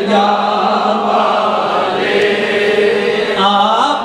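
A man singing a naat, an Urdu devotional poem, unaccompanied into a microphone, drawing out long held notes with a glide in pitch near the end.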